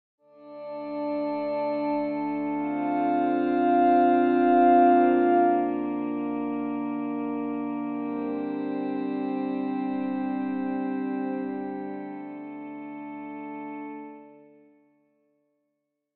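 Sampled distorted electric-guitar pad played from a keyboard: sustained chords swell in, shift through a few chord changes, and fade out about a second before the end.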